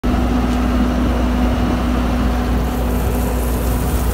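A machine's engine running steadily, with a constant low rumble and a steady hum.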